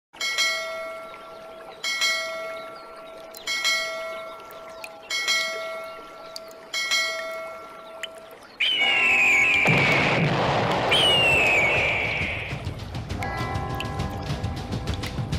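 A bell tolls five times, about one and a half seconds apart, each strike ringing on and dying away. After the fifth, a loud rushing noise sets in with two high falling cries over it, and music begins near the end.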